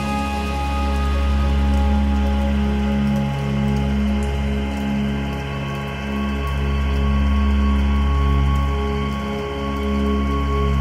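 Ambient electronic drone music: a deep bass drone swells and eases under several long-held synth tones, with a steady rain-like hiss layered over it.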